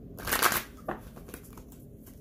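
A deck of tarot cards being shuffled by hand: one quick riffling flutter about a quarter second in, followed by a sharp tap and a few lighter ticks as the cards settle.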